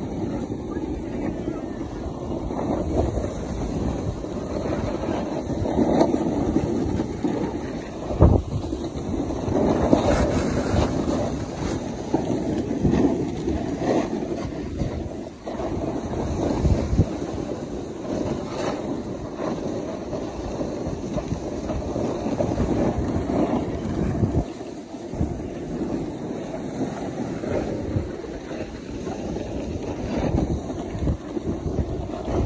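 Snowboard sliding and scraping over packed snow at speed, with wind buffeting the phone microphone: a steady, rough rush that swells and fades with the turns, and a sharp thump about eight seconds in.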